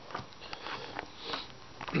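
Playing cards being dealt one at a time onto the floor: a few soft, irregular flicks and taps.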